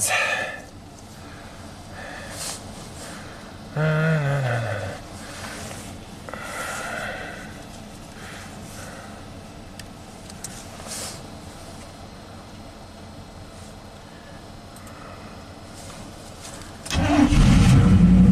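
1987 GMC 1500 pickup engine cranking and firing up instantly about a second before the end, then running, on a freshly fitted distributor cap and rotor meant to cure its misfire and stalling. Faint sounds only until then.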